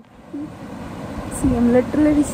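A woman's voice speaking over a steady rush of running water, which fades in at the start.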